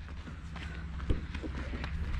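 A child's running footsteps on dry, gravelly dirt, with one sharper thump about a second in.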